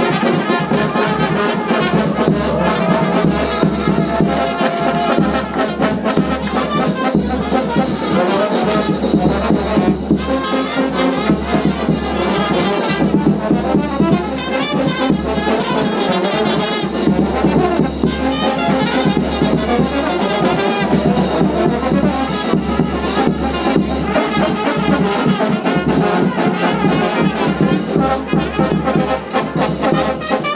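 Live brass band playing at close range: trumpets and a large bass horn over a bass drum, loud and continuous.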